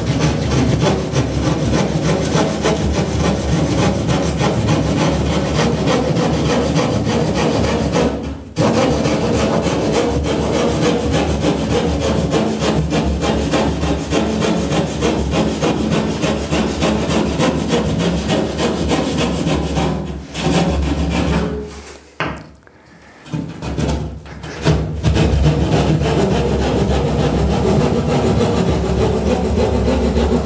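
Hand drywall jab saw sawing through green gypsum plasterboard in quick rasping strokes to cut out a niche opening. The sawing breaks off briefly about eight seconds in and again for a second or two past the two-thirds mark.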